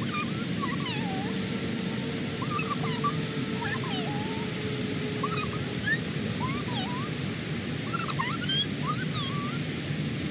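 A dog whining in many short, high-pitched squeals that rise and fall, coming irregularly over a steady background hiss.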